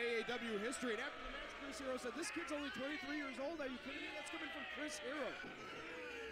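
Quiet, continuous speech, much softer than the loud talk just before, with a few faint clicks.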